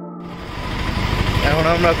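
Soft ambient music cuts off just after the start and gives way to street traffic noise, a dense low rumble of engines and motorbikes.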